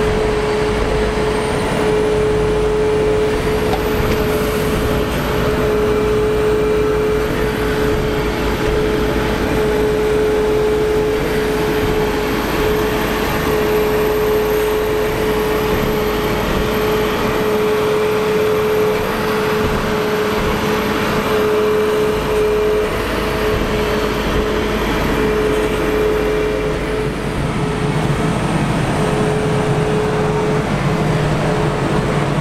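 Large Claas Xerion tractors working a silage pit: heavy diesel engines running steadily under load, with a strong steady whine throughout. A faint high whistle rises in the first few seconds and holds until near the end.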